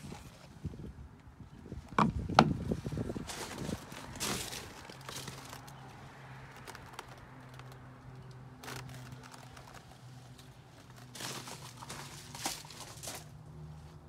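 A few sharp plastic clicks about two seconds in, as the round cover of an RV's exterior spray port is handled and snapped shut, then scattered crunching footsteps on gravel. A faint low steady hum sits underneath.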